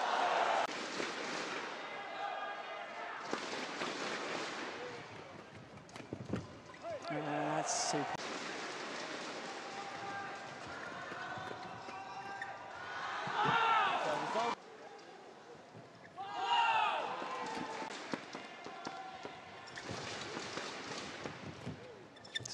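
Badminton arena sound during a doubles rally: sharp racket strikes on the shuttlecock amid crowd noise, with bursts of cheering and applause as points end, and crowd shouts rising twice in the second half.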